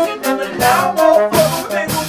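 A live band playing a hip hop groove: a horn line with held notes over drums.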